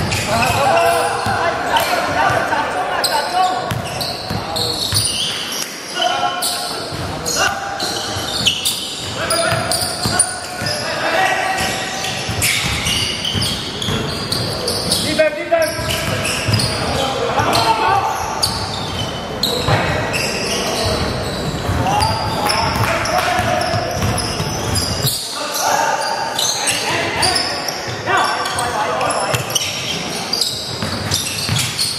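A basketball being dribbled and bounced on a hardwood court, with players' voices calling out, in a large indoor sports hall.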